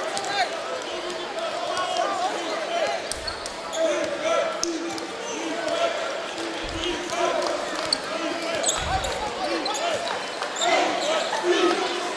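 A basketball is dribbled on a hardwood court, a few low thuds standing out, amid a continuous mix of crowd and player voices echoing in an arena.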